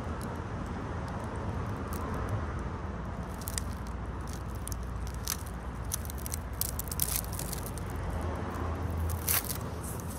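Crispy, flaky black porous lump crackling and crunching as fingers press and handle it: a scatter of sharp crackles starts about a third of the way in, the loudest near the end. A steady low rumble runs underneath.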